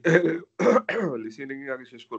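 A person clearing their throat in two short rasps, followed by about a second of voice without clear words.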